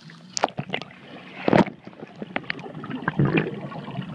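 Water and bubbles heard underwater through a camera submerged in a swimming pool: a run of muffled knocks and rushes of bubbles as swimmers move, the loudest rush about one and a half seconds in.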